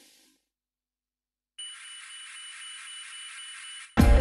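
Movie-trailer sound effect: after a second of dead silence, a steady high hiss with two thin whistling tones sets in and cuts off suddenly near the end.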